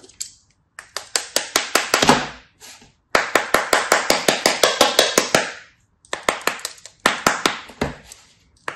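Kinetic sand being scraped and cut with a black plastic blade: gritty crunching made of rapid sharp ticks, about six a second, in several strokes of one to two and a half seconds with brief pauses between them.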